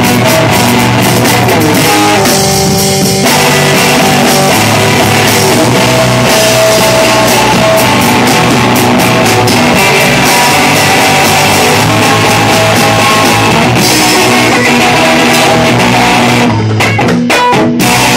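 Live rock band playing an instrumental passage: electric guitar, electric bass and drum kit, loud and steady, with a brief break in the cymbals near the end.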